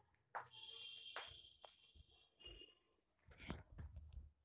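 Faint clinks of a steel lid and a steel spatula against a frying pan as the lid comes off and the cooking moong dal and fenugreek are stirred. The first clink is followed by a thin high ring lasting about two seconds, with a few more light clicks later.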